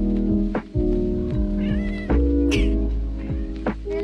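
A black house cat meowing twice around the middle, the second call higher, over background music.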